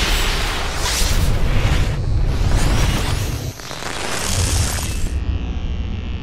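Cinematic intro sound effects: a series of rushing whooshes, each swelling and fading over about a second, laid over a deep booming rumble.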